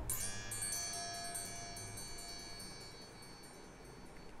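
A single high note played on an Arturia Pigments wavetable synth patch, struck once and ringing with many high overtones that fade slowly. It is being tried out as a stand-in for a hi-hat: the closest thing to a hi-hat he can find.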